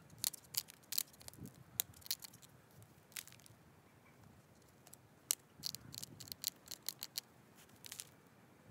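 Antler pressure flaker working the edge of an agatized coral Clovis point: small flakes snap off with sharp, high clicks that come in irregular bursts, a dozen or more in all.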